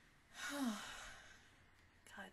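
A woman sighing once: a breathy exhale with a short falling voiced tone, fading out within about a second.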